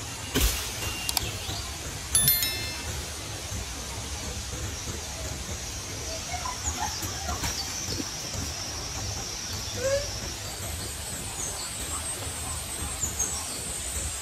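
Steady outdoor ambience with a high hiss and a low rumble. Near the start come a couple of mouse clicks, then a short bright chime: the sound effect of the like-and-subscribe overlay. A few faint short chirps follow later.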